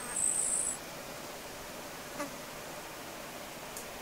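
A short, high-pitched buzzing insect chirp, about three-quarters of a second long, right at the start, over a steady outdoor hiss. A faint click follows about two seconds later.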